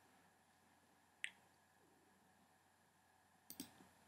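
Near silence broken by a few faint clicks from working the computer: one about a second in, and two close together near the end.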